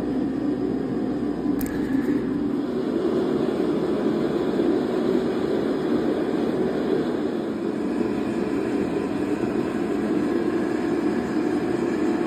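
A steady, even rushing roar of running machinery, unchanging in level, with most of its weight in the low middle.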